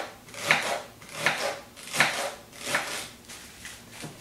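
Kitchen knife slicing a celery stalk into thin pieces on a cutting board: about five cuts, roughly one every three-quarters of a second, the last ones weaker.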